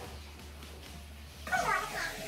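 A small dog giving a short whining cry near the end, over soft background music.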